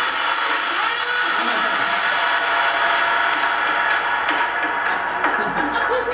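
Low-fidelity rap backing track playing through the venue's PA, steady and unbroken, sounding more muffled from about two seconds in.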